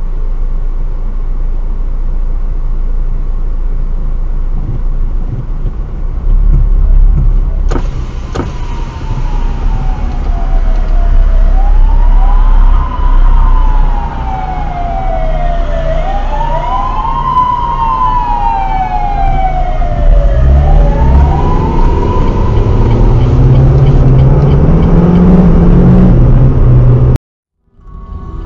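Emergency vehicle siren wailing over a car's steady engine and road hum, starting about a third of the way in: each cycle glides slowly down in pitch, then sweeps quickly back up, repeating every few seconds. Near the end the siren fades and an engine revs up, rising in pitch, before the sound cuts off suddenly.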